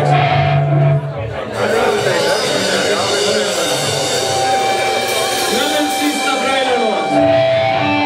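Live metal band playing: distorted electric guitars and bass, opening on a held low note, with the full band coming in about a second and a half in.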